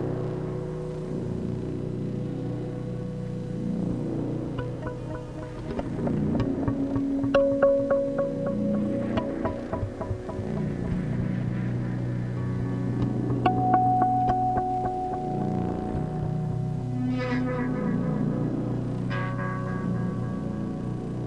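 Improvised drone music from electronic oscillators: steady low drone tones, with a held higher tone entering about seven seconds in and another about halfway through. Over the drone, clusters of short plucked or struck notes from a tabletop guitar come in the middle and again near the end.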